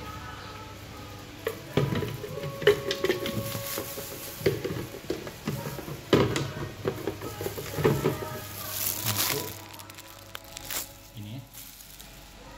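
Hard plastic kitchenware being handled: a run of sharp knocks, taps and clatter as a plastic blender jug and container are set down, tipped and opened. There is a brief rustle of plastic about nine seconds in.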